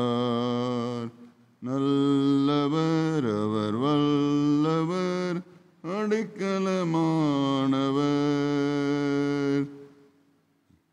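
A man singing a Tamil Christian worship song in long, drawn-out notes: three phrases with short breaks between them, the last stopping just before the end.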